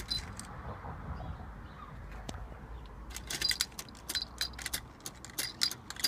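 Early-1900s clockwork trapeze toy running: its spring motor and wire frame give off irregular metallic clicks and rattles as the figures swing. The clicks are sparse at first and come thick and fast from about halfway.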